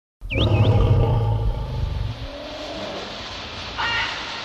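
A lion roaring, deep and loud for about two seconds and then fading. Two quick chirps come at the start, and a short bird call comes near the end.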